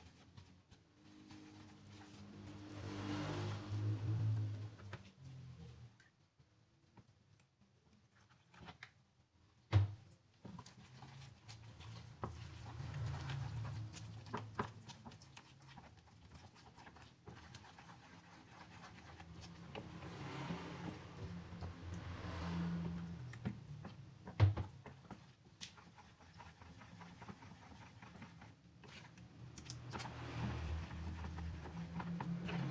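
A plastic spatula stirring a thin, runny flour-and-water batter in a plastic bowl, in soft swells with a pause partway through. Two sharp knocks break in, the louder one about ten seconds in.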